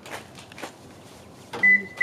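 Pickup truck's driver door unlatching with a sharp click about one and a half seconds in, followed at once by the cab's warning chime beeping at a steady high pitch, about two and a half beeps a second.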